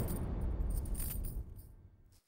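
Decaying tail of a dramatic background-music hit: a crash rings out with a metallic jingle over it, fading steadily and cutting off just after the end.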